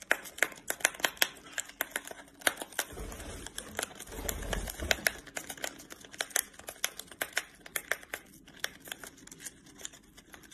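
Irregular crinkling and sharp crackling of a paper tea packet as a lovebird grips it in its beak and tugs it through a narrow gap.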